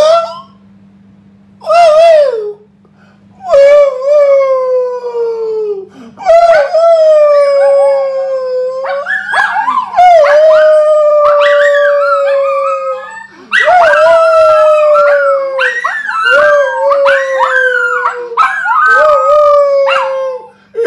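Dog howling: a string of long drawn-out howls, each sliding slowly down in pitch, coming almost one after another from a few seconds in.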